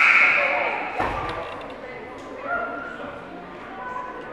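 A short, loud blast of a basketball scoreboard horn that echoes through the gym and fades over about a second, signalling a timeout. A thump follows about a second in, over crowd chatter.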